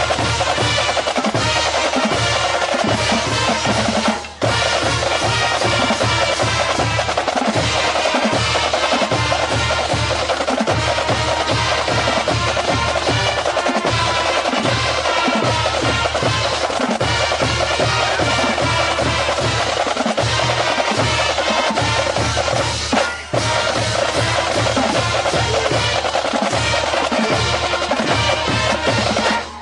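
A band playing a fight song, with snare drums, bass drums and drum rolls to the fore. The music drops out for a moment twice, once about four seconds in and again about twenty-three seconds in.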